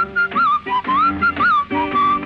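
Whistled melody with sliding, wavering notes over an orchestral accompaniment in an old Tamil film song.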